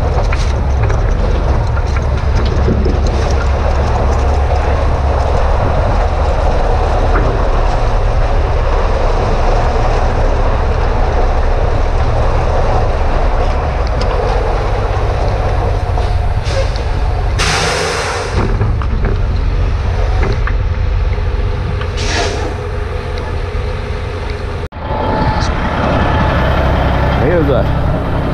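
A heavy-duty tow truck on the road towing a semi tractor: a steady low rumble of engine, tyres and wind on the microphone. About 17 seconds in there is a short burst of hiss.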